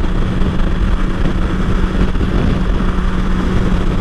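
Wind rush on the microphone at freeway speed, over the steady drone of a BMW S1000XR's inline-four engine cruising.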